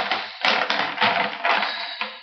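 A coil of solid copper wire being handled, its loops scraping and rattling against a whiteboard and against each other in a run of small clicks, with one sharp click about half a second in.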